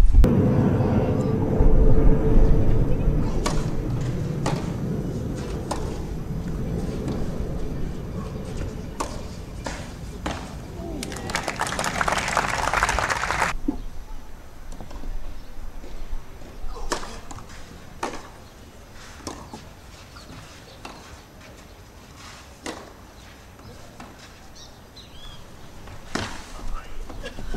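Tennis rally on a clay court: the ball struck by rackets about six times, a little over a second apart, in the second half. Before it, crowd voices fade away over the first several seconds, and a short loud burst of noise comes about halfway through.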